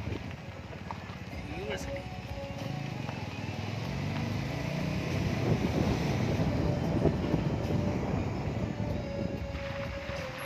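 A car on the move: steady engine and road noise, with music and indistinct voices over it.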